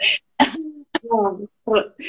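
Women laughing lightly: a few short, breathy bursts of laughter and brief voiced sounds, broken by gaps.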